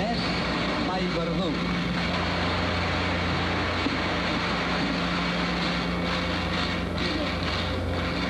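A steady, dense din with a low hum running under it, and faint voices rising through it in the first second or so.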